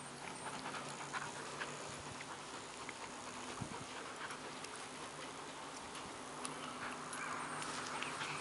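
Two dogs, a Chinese crested powder puff and a mixed-breed dog, playing tug-of-war with a knotted rope toy on grass: quiet scuffling and rustling with many small clicks, and faint dog sounds of play.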